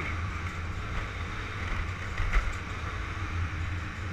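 Motor scooter's small engine running steadily while riding slowly along a street: a steady low drone under a haze of road and wind noise, with one brief knock a little past two seconds in.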